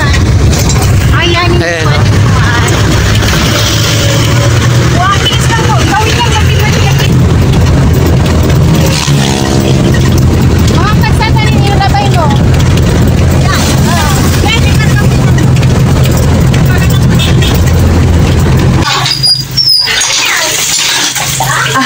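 Jeepney engine and road noise heard from inside the open-sided passenger cabin while riding, a loud, steady low rumble. It cuts off about a second before the end.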